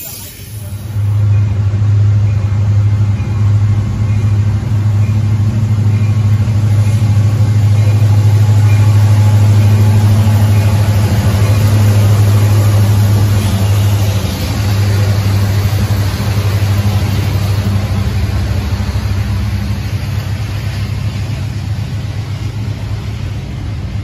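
Diesel-electric freight locomotives passing under power with a double-stack container train: a loud, steady low engine hum that comes in about a second in, dips briefly about halfway through and fades near the end, over the noise of the moving cars.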